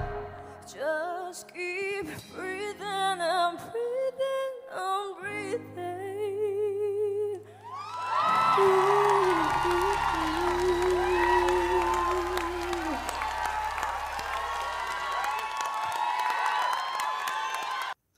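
A female singer's closing phrases, sung softly with wide vibrato over sparse backing. About eight seconds in, a studio audience bursts into cheering and whoops while she holds a long final note.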